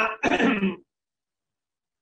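A man coughing to clear his throat, in two short bursts within the first second.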